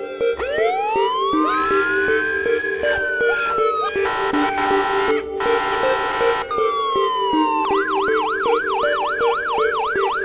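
Police-style siren in a rap song's intro: a slow wail rising over about two seconds and falling, a steady tone held for about two seconds, then a fast warbling yelp near the end, over the song's repeating instrumental loop.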